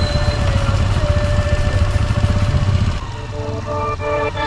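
Kawasaki ZX-10R motorcycle's inline-four engine running steadily under way. About three seconds in, the engine sound drops back and music with distinct notes comes in.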